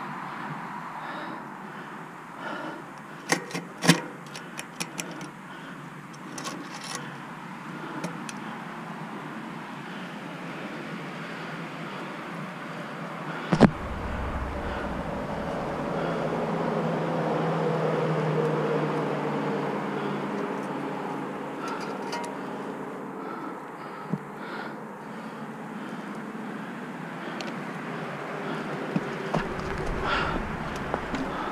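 A motor vehicle passes, its engine note swelling and then fading over several seconds. A few sharp clicks come early on, and a single knock about halfway through.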